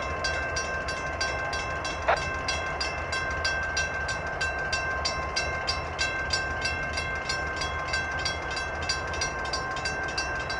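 Union Pacific diesel locomotives, led by a GE ES44AC, pulling an intermodal stack train past at close range, their engines giving a steady low rumble. Over this run a steady high whine and a regular clicking of two or three a second, with a short rising chirp about two seconds in.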